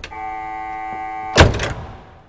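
A 1971 Oldsmobile 442's key-in-ignition warning buzzer sounding a steady tone, cut off about a second and a half in as the car door slams shut with a loud thud, followed by a smaller knock.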